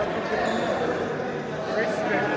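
Indistinct voices talking in a large room.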